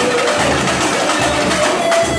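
Live samba percussion group playing: large surdo-type bass drums beat a regular pulse under a dense, fast rattle of smaller percussion.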